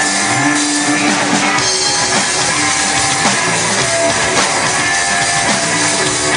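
Live rock band playing loudly and steadily: drum kit, electric guitar and bass guitar.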